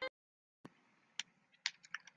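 A music jingle's last note cuts off, then a few faint, irregular clicks of computer input, bunched closer together near the end.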